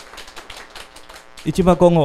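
A short pause filled with faint, quick, rapid clicking, then a man's voice starting to speak in Japanese about one and a half seconds in.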